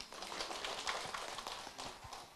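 Light, scattered audience applause: many small hand claps blending together, dying away near the end.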